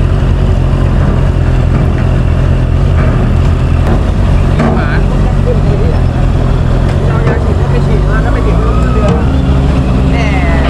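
Steady low engine rumble of a motorcycle creeping onto a car ferry's deck. People's voices call out around the middle and towards the end.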